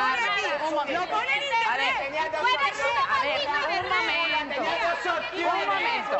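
Several people talking loudly over one another in a heated quarrel, a woman's voice among them, heard through a TV broadcast's sound.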